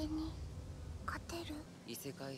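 Quiet speech at a low level, with short broken phrases and no other clear sound.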